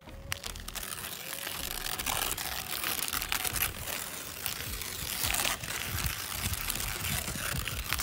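Brown masking paper and masking tape being peeled off a painted boat hull, with the paper crinkling and rustling in continuous irregular crackles.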